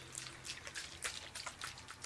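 A run of faint, wet-sounding small clicks, about five a second, from the mouth and lips of a woman pausing close to the microphone.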